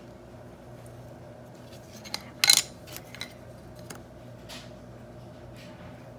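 A brief clatter about two and a half seconds in, followed by a few light taps, as a wooden ruler and a metal craft knife are handled and set down on a plastic cutting mat while fondant is cut. A low steady hum lies underneath.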